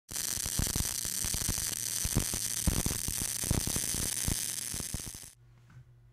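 Electric welding arc crackling and hissing steadily with irregular sharp pops, stopping about five seconds in.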